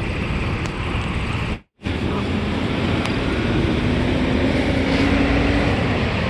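Steady traffic noise from a road, with a faint low drone rising slightly in pitch through the second half. The sound drops out completely for a moment about one and a half seconds in.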